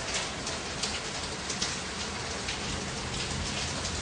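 A steady hiss of background noise with faint crackle through it, with no distinct events.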